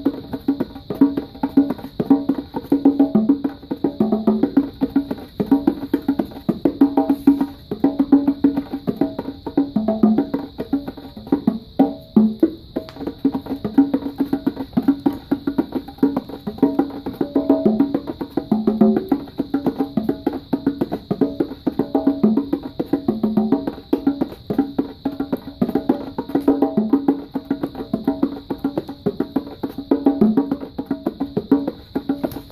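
A pair of bongo drums played by hand in a fast, unbroken rhythm, strikes moving between the higher and lower drum.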